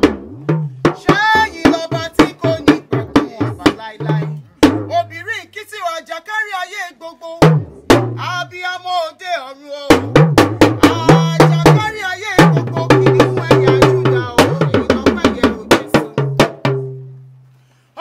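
A woman singing a song line by line over a band of drums and a bass line, the drum hits steady under her voice. The music fades out near the end.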